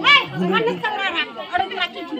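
Several people talking at once: crowd chatter, voices overlapping.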